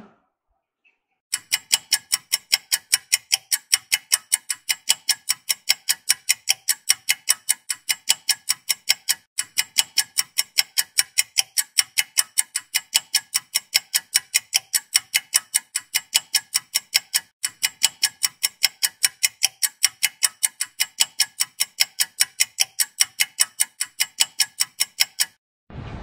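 Clock-ticking sound effect, a steady even tick of about three ticks a second, starting about a second in and stopping shortly before the end.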